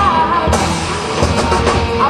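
Live rock band playing through a stage PA: drum kit to the fore, with bass and electric guitars.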